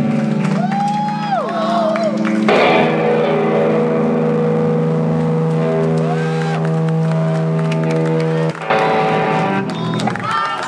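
Electric guitar left leaning against its amplifier, droning with steady sustained feedback tones that shift to a new set of held notes about two and a half seconds in and again near the end. Short whoops from the crowd rise over it.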